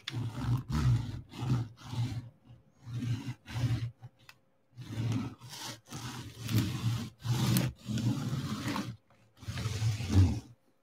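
Fingers rubbing and pressing a plastic straightedge along rows of resin diamond-painting drills on the canvas: a run of short rasping strokes, about two a second, broken by two brief pauses.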